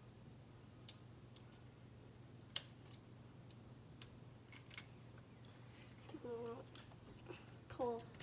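Faint, scattered clicks of a plastic airsoft revolver being handled. The sharpest click comes about two and a half seconds in.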